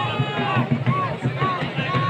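A song with a voice singing a melody of short arching phrases that repeat about twice a second, over a steady low beat.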